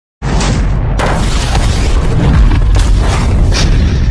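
Loud, deep rumbling boom that starts suddenly a moment in and keeps rolling, with a few sharper cracks inside it: an intro sound effect over the channel's title card.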